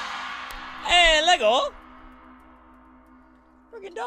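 The final crash cymbal of a full drum kit ringing out and fading over the first two seconds, with a short, loud wavering vocal cry about a second in. A low steady tone hangs on quietly after the ring dies, and a man starts speaking near the end.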